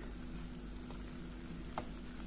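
Vegetable oil sizzling steadily in a frying pan under puff pastry with a banana-and-egg filling, with one faint tap near the end.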